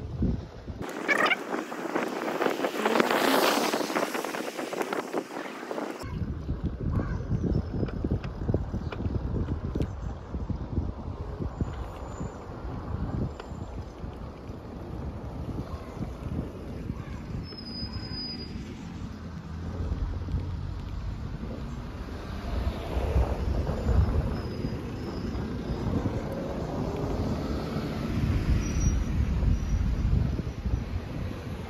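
Wind buffeting the microphone, a gusty low rumble. In the first few seconds a rushing noise swells and fades before the rumble sets in.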